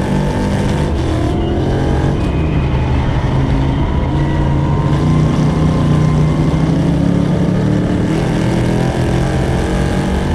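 Dirt Sportsman modified race car's V8 engine running hard at racing speed, heard from its onboard camera. The pitch climbs through the middle and eases off about eight seconds in.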